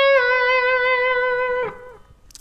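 Electric guitar playing one held, bent note: the pitch slips down a little just after the start, then the note rings with a slight waver until it is cut off shortly before the end. It is a harmony note a diatonic third above the lick, bent only a semitone so that it stays in the C# minor scale.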